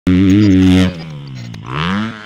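Dirt bike engine revving: a loud, steady high rev that starts abruptly and drops off just under a second in, then a rising throttle blip near the end.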